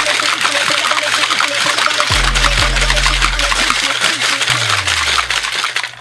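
Ice rattling fast and hard inside a metal cocktail shaker in a vigorous shake meant to break the ice into chunks. Background music with deep bass notes plays under it, and a falling bass glide comes a little after four seconds.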